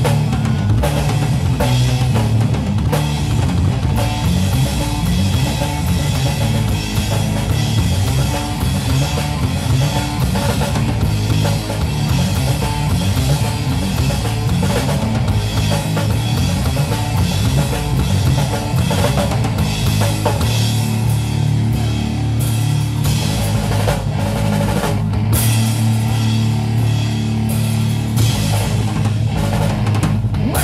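Live rock trio playing an instrumental passage on electric guitar, bass guitar and drum kit, loud and continuous, with no vocals.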